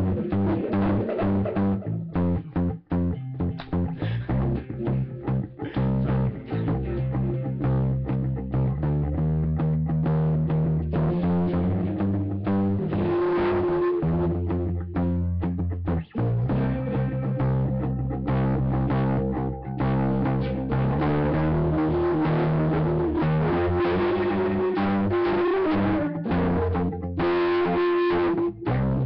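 Guitar music: a low bass line of held notes that change every second or two, with guitar notes above it, playing without a break.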